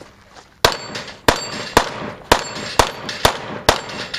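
Pistol fired rapidly: seven shots roughly half a second apart, beginning a little over half a second in, each followed by a short metallic ring.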